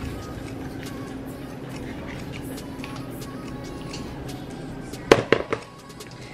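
Quiet background music, then a little after five seconds in a few sharp knocks as a metal measuring cup is rapped against the rim of a plastic mixing bowl to shake out ricotta cheese.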